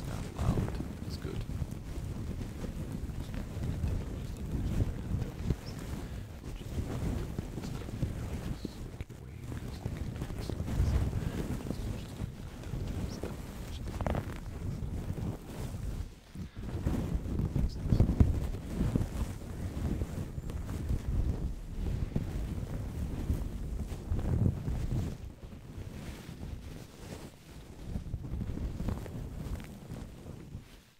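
Sheet of paper crumpled and rubbed against a microphone, a continuous crackling rustle that swells and falls, loudest a little past halfway.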